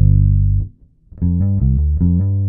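Five-string electric bass played fingerstyle: a low held note rings and stops about two-thirds of a second in, then after a brief pause a quick run of several plucked notes leads into a new long-held note near the end, part of a gospel bass lick.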